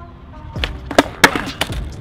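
Skateboard popped for an ollie on a concrete sidewalk: a quick series of about four sharp wooden cracks and clatters as the tail strikes and the board slaps back down. The loudest crack comes about a second and a quarter in. The attempt fails: the board comes down without the rider on it.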